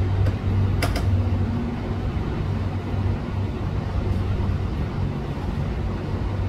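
A steady low mechanical hum, with a single sharp click about a second in.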